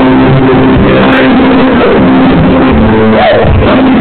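Live band playing, with electric guitar and keyboards holding long sustained chords, recorded very loud, close to full scale.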